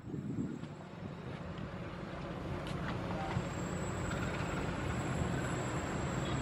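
Passenger train's steady low rumble, slowly growing louder, with a faint high steady whine coming in about halfway through.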